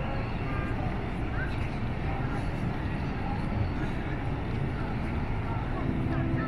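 Outdoor campus ambience: a steady low rumble with faint, indistinct voices of people walking by.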